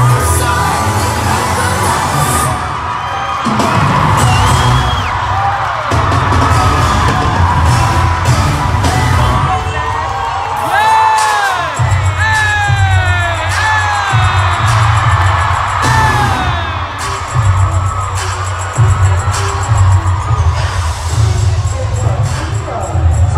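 Live pop concert heard from the audience: an amplified track with a heavy bass beat and singing, with crowd whoops and screams rising and falling over it, most heavily about halfway through.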